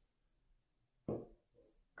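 Near silence of a small room, broken by one brief soft sound about a second in.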